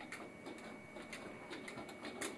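Faint, irregular plastic clicks and taps from a toddler's toy steering wheel and dashboard controls being turned and handled.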